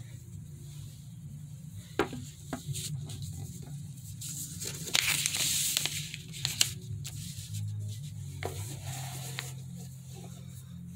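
Handling noises of paper and marker pens being set out, with light clicks and knocks and a rustle about five seconds in, over a steady low hum.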